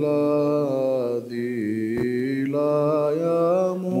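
Male voices chanting an Orthodox liturgical hymn in Byzantine style: a melismatic melody on long sustained notes over a steady held low drone (ison).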